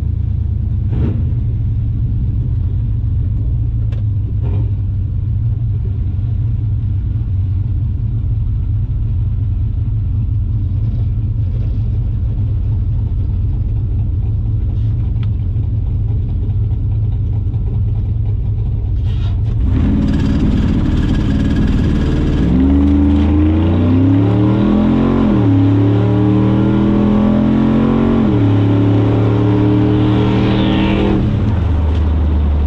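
Silverado truck engine idling with a steady low rumble, heard from inside the cab. About twenty seconds in it jumps to a harsh, crackling hold on the MSD two-step launch limiter. Then it launches at full throttle, the revs climbing and dropping back at two gear changes.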